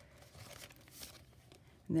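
Faint rustling and crinkling of paper pages being turned in a handmade junk journal, with a brief sharper rustle about a second in.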